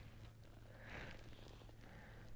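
Near silence: a faint low hum with a soft rustle about a second in.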